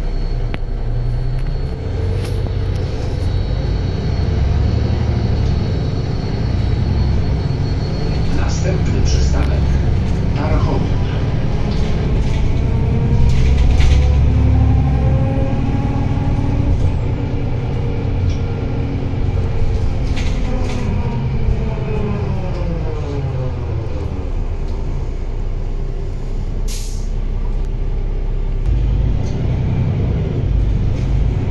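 Interior sound of a Solaris Urbino 12 III city bus under way: the low, steady rumble of its Cummins ISB6.7 six-cylinder diesel, with drivetrain whine that rises as the bus gathers speed and then falls steadily in pitch as it slows. A short hiss of released air comes near the end.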